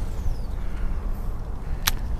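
A fishing cast: line paying out from the reel with a faint falling whine, then one sharp click near the end, over a steady low rumble.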